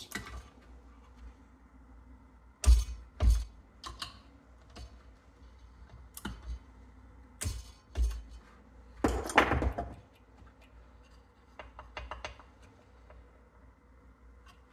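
Torque wrench and socket tightening the connecting rod cap bolts of a Briggs & Stratton vertical-shaft engine to 100 inch-pounds. Scattered sharp metallic clicks and ratchet ticks, with a longer run of clicking about nine seconds in.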